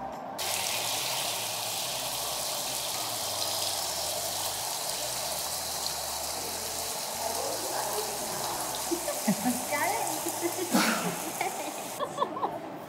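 Indoor ornamental fountain, its water falling and splashing in a steady rush, with voices near the end.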